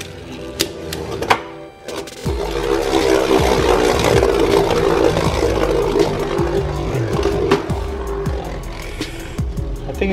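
Two Beyblade Burst tops, Dangerous Belial among them, spinning and clashing in a plastic stadium: a continuous whirring scrape with sharp knocks as they collide, over background music. A couple of knocks come in the first second or so, and the whirring fills in from about two seconds in.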